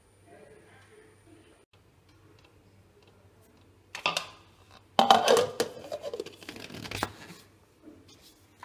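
Dry roasted whole spices rattling and scraping against the stainless steel jar of a mixer grinder as the jar is handled. There is a short rattle about four seconds in, then a louder, longer clatter a second later that dies away. The grinder motor is not running.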